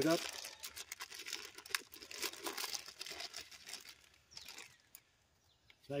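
Knife packaging crinkling and rustling as it is torn open and unwrapped by hand, with many small crackles that die away about four and a half seconds in.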